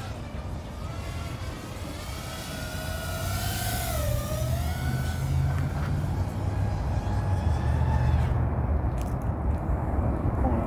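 FPV racing quadcopter's motors and propellers whining in flight, the pitch wavering up and down with the throttle and dipping about four seconds in, over a low rumble that grows louder.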